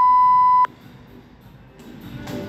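An electronic workout timer's single long, steady beep, cutting off suddenly well under a second in. It signals the start of a timed workout.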